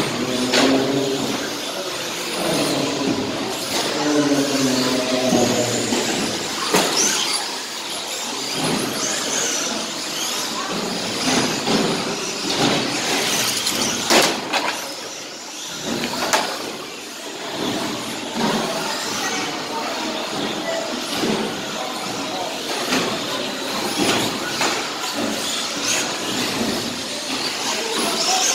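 Several electric radio-controlled short course cars racing on an indoor track, their motors whining high and rising and falling as they accelerate and brake, with occasional sharp knocks.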